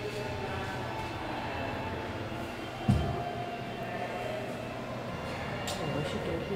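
Indoor room tone: a steady low hum with faint murmur of voices, and one dull thump about halfway through.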